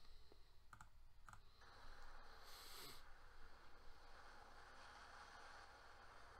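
Near silence: two faint computer mouse clicks about a second in, then low steady hiss.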